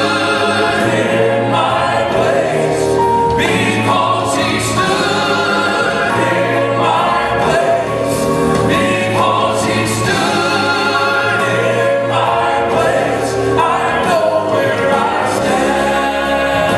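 Southern gospel male quartet singing in four-part harmony.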